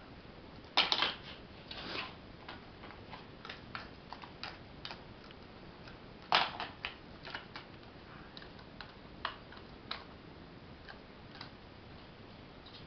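Sheltie puppy's claws clicking irregularly on a hardwood floor as it scampers about, with two louder knocks, one about a second in and one about six seconds in.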